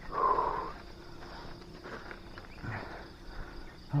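A freshly caught red junglefowl, held by hand, giving one short, harsh distress squawk right at the start.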